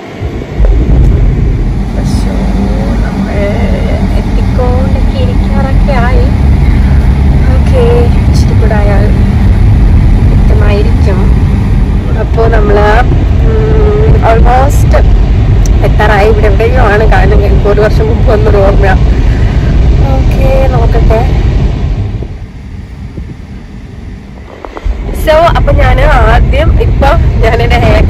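Steady low road and engine rumble inside a moving car's cabin, with a voice over it. The rumble drops away for about three seconds near the end, then returns.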